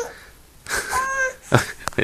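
A toddler's breathy, high-pitched vocal sound lasting about half a second, a second into the clip. It is followed by a short, louder burst of breath or voice, and a sharp click near the end.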